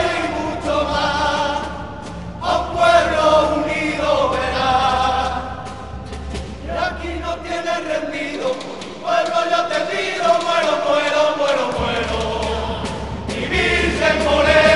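A group of men singing together, a song in phrases of a few seconds each with short breaks between them.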